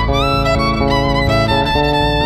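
Electric violin playing a bowed melody over a bass guitar line, the violin gliding up into a new note just after the start.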